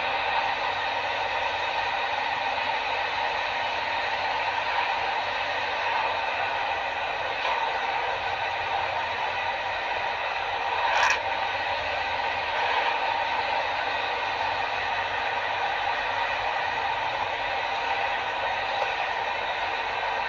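Steady running noise inside a training truck's cab as it drives slowly through a test course, with a mechanical rattle. There is one sharp click about 11 seconds in.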